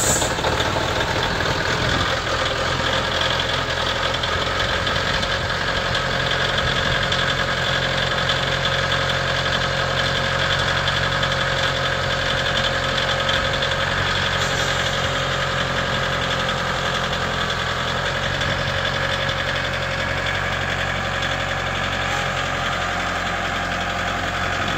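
Case IH Farmall 40B compact tractor's diesel engine idling steadily.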